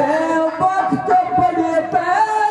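Harmonium holding steady chords under a man's amplified voice declaiming or singing into a microphone, in Haryanvi ragni style.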